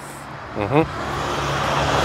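A motor vehicle approaching, its engine and tyre noise growing steadily louder through the second half.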